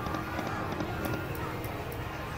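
Video slot machine's game sounds as its reels spin: steady electronic music with a patter of light ticks, over a casino's background din.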